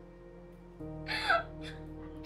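Background music of steady held tones starts abruptly a little under a second in, and just after it a woman makes a brief voice sound with a sliding pitch.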